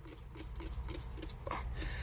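Febreze trigger-spray bottle pumped rapidly, a quick even run of soft spritzes about five a second as fabric in a truck sleeper is doused, over a low steady hum.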